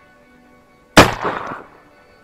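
A single shotgun shot about a second in, very loud and sudden, its report dying away over about half a second.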